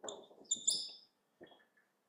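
Marker pen writing on a whiteboard: a series of short squeaks from the tip, with scratchy strokes between them, the loudest squeaks about half a second in, dying away about a second and a half in.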